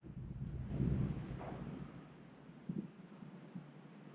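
Faint low rumble on the microphone, strongest about a second in and then fading, with a few soft knocks later on.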